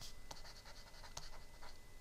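Stylus writing on a pen tablet: faint, irregular taps and scratches of the pen tip as words are handwritten.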